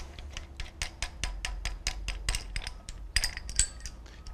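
Ratchet wrench clicking rapidly as the bolts of a BMW N63 camshaft hold-down bracket are unscrewed, with light metallic clinks of the steel tooling.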